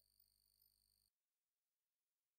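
Near silence: a very faint steady hum that cuts off about a second in, leaving dead digital silence.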